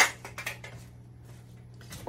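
A sharp knock against a hard work table, followed by a few light clicks as craft items are handled, over a steady low hum.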